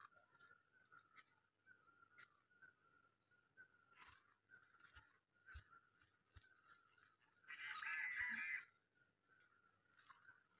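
Mostly near silence with a few faint clicks, then a brief crunchy rustle of about a second, late on, as a cabbage is pulled and snapped from the ground.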